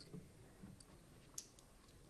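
Near silence with a few faint, short clicks, a sharp one right at the start and another about one and a half seconds in: darts being pulled out of a bristle dartboard.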